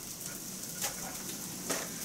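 Diced onions, bacon and sausage sizzling steadily as they sauté in a pot, with two faint clicks.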